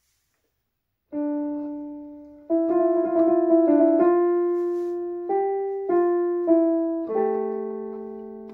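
Piano improvisation in D minor starting up again after about a second of silence: one note held and fading, then a slow line of single notes over sustained lower notes.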